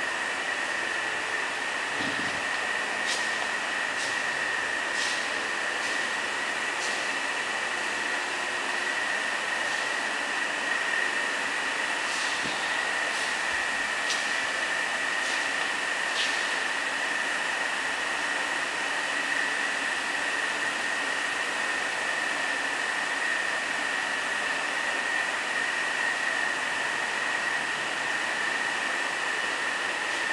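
A steady hiss with a constant high-pitched whine running underneath, and a scattering of faint short clicks, most of them in the first half.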